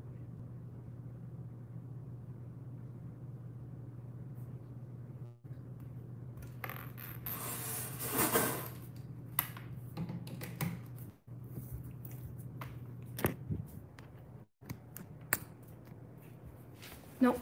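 A steady low hum of room noise, then from about halfway a run of rustles, scrapes and sharp knocks, the loudest a rustling swell about halfway through; near the end, handling noise as the phone is picked up.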